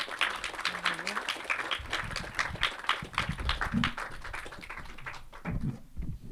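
Audience applauding, a dense patter of many hands clapping that thins out and stops near the end.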